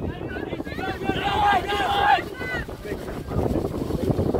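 Shouts and calls from players and onlookers across an outdoor pitch, loudest about a second in, over wind rumbling on the phone's microphone.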